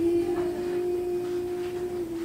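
A woman's voice holding one long, steady, pure note like a hum, sung into a stage microphone during an acoustic ukulele song.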